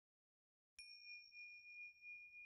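A single faint, bell-like ding that starts suddenly about three-quarters of a second in, out of dead silence. It rings on as a steady high tone with a brief bright shimmer at the strike.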